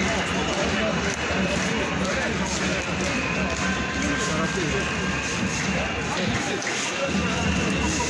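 Outdoor crowd hubbub: many people talking at once around the entrance, with music faintly in the background.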